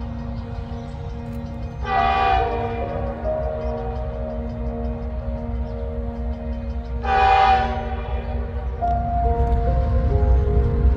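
Diesel freight locomotive's air horn sounding two blasts about five seconds apart, each about a second long, over a steady low rumble as the train approaches.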